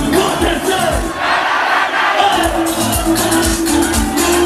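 Live concert music with a steady beat and a held vocal line, played loud over the noise of a large crowd.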